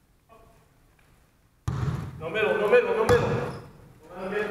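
Players calling out in a gym from about halfway through, with a basketball bouncing on the floor and a sharp bang a little after three seconds in.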